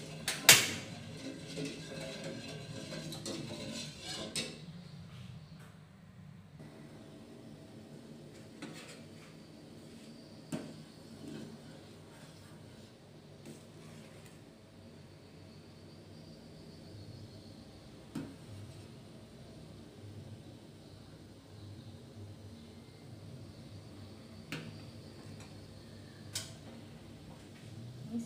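A ladle stirring liquid in a stainless steel saucepan, knocking against the pot now and then. A sharp clack about half a second in is the loudest. Fainter single knocks come every few seconds after the first few seconds of busier stirring.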